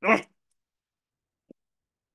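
A man's voice says one short questioning word, then dead silence broken only by a single brief faint sound about a second and a half in.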